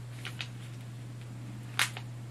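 Scissors cutting into a paper envelope: a couple of faint small clicks, then one short sharp snip near the end, over a steady low hum.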